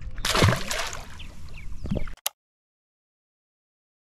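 A channel catfish tossed back into the lake, hitting the water with a splash followed by water sloshing that dies away. The sound cuts off to dead silence a little over two seconds in.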